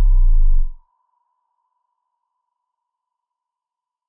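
Synthesized logo-intro sound effect: a deep boom falling in pitch stops under a second in, leaving a single high ringing tone that slowly fades away.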